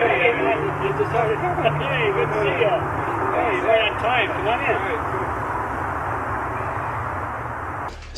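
Several voices talking at once over a steady rushing noise, with a low hum through the first three seconds.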